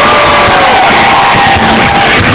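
Live rock band playing loud through a heavily overloaded recording, with the crowd cheering over it; a few held notes slide in pitch across the middle.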